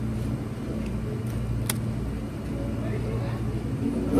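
Steady low hum of restaurant background noise, with one sharp click a little before the middle.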